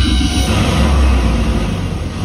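Nature documentary trailer soundtrack playing through a Sonos Beam (Gen 2) soundbar and Sub Mini subwoofer: cinematic music over a heavy, continuous deep bass rumble.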